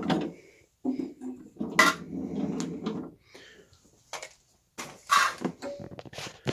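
Hard parts of a vintage Electrolux canister vacuum being handled: rubbing and rattling, a sharp click about two seconds in, and another short clatter near the end.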